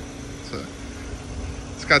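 A steady low hum over faint background noise, with a man's voice starting near the end.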